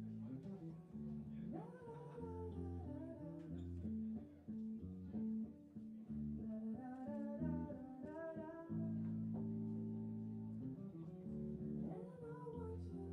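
Live band music: an electric bass guitar plays long, held low notes, and a melodic voice-like line comes in twice over it, in the middle stretches.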